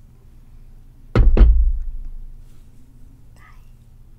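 Glass mason jar set down on the table close to the microphone: two loud knocks a quarter-second apart, the deep thud fading over about a second.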